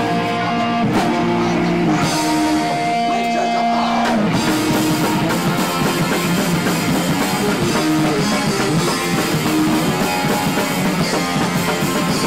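Live punk rock band playing with electric guitars, bass and drum kit. For the first few seconds held guitar chords ring out, then about four seconds in the drums and full band come crashing back in at full tilt.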